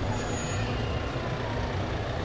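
Heavy dump truck's diesel engine running steadily at low speed as the truck rolls slowly past, a constant low-pitched engine sound.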